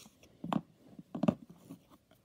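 A few brief clicks and rustles of hands handling a paper-backed fabric quilt block and small tools, with two sharper ticks about half a second and a little over a second in.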